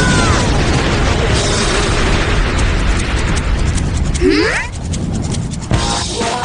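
Cartoon explosion sound effect: a blast at the start, then a long rumble of noise that dies down about four seconds in, followed by a short rising pitched glide.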